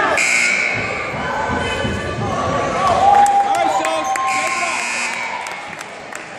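Gymnasium scoreboard buzzer sounding twice, about a second or less each, once right at the start and again about four seconds in, signalling a substitution. Voices of players and spectators run in between.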